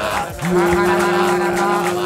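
Worship singing: a man's voice holds one long note from about half a second in, bending upward as it ends, over steady backing music.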